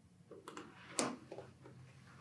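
A few quiet computer-mouse button clicks, the loudest and sharpest about a second in.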